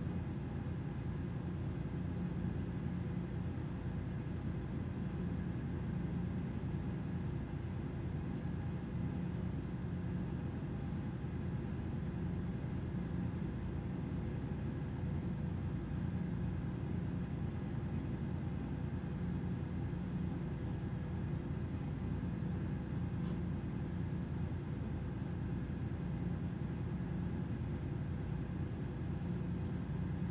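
Steady low machinery hum aboard a moored tanker, an even drone with a few fixed tones that never changes in level.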